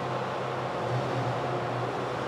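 Steady mechanical hum: a low drone with a few fixed higher tones over an even rushing noise, as from running machinery.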